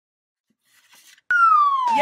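Intro sound effect: a single whistle-like tone that starts sharply just past halfway and glides steadily downward in pitch, with music starting in right at the end.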